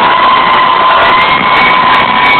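Loud, distorted live concert music from an arena sound system: a long held note that slides up and back down and holds steady, over a dense noisy wash.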